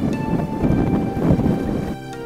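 Wind buffeting the microphone and riding noise from a Yamaha XMAX scooter on the move: a heavy, uneven low rumble. Faint background music runs underneath.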